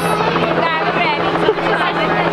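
Voices talking and calling out over a steady, low mechanical hum.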